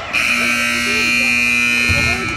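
Gymnasium scoreboard buzzer sounding one steady, loud, buzzing blast for nearly two seconds, stopping play, then cutting off.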